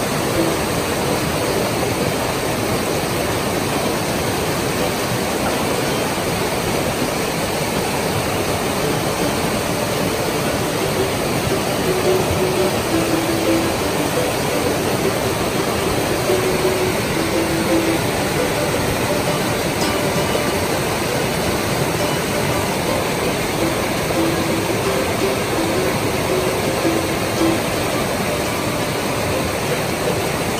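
Mountain creek rushing over boulders in whitewater, a loud, steady rush of water close by. Faint held musical notes come and go underneath it.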